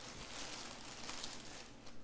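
Soft rustling of polyester fiberfill stuffing being pulled and handled, fading out near the end.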